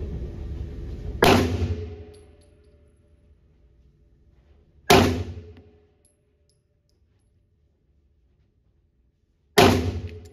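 Three single shots from a Tisas 1911 Night Stalker 9mm pistol, fired slowly about four seconds apart. Each shot is followed by about a second of echo off the range walls.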